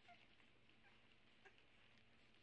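Near silence: quiet room tone with a faint steady low hum and two tiny brief sounds, one just after the start and one about a second and a half in.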